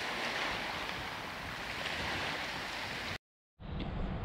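Steady wash of small bay waves, an even hiss with no distinct breaks. It cuts off suddenly about three seconds in. After a brief gap a low wind rumble on the microphone begins.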